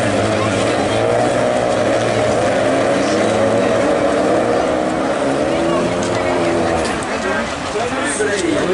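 Several Renault Clio rallycross race cars racing in a pack, their engines at high revs with overlapping engine notes rising and falling as they accelerate and lift.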